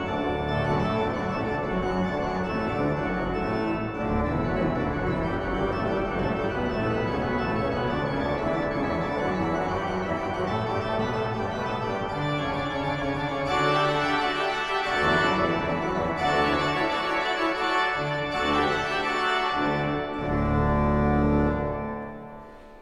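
Pipe organ playing the closing bars of a piece on manuals and pedals, growing fuller and brighter about two-thirds of the way through. It ends on a long final chord over a deep pedal note, which is released right at the end into the hall's reverberation.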